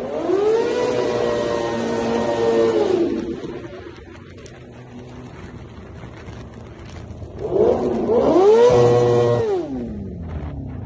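Motorcycle engine revved hard twice, with a quieter stretch between. Each time the note climbs, holds briefly at the top and falls back. The revs ring out inside a road tunnel.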